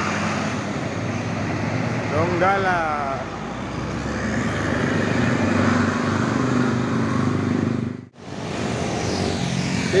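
Intercity coach's diesel engine running as the bus moves off, with road traffic around it. The sound breaks off abruptly about eight seconds in and gives way to general street traffic.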